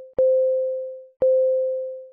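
Countdown beeps: a single mid-pitched electronic tone once a second, each beep starting with a click and fading away over about a second. Two beeps fall in these two seconds.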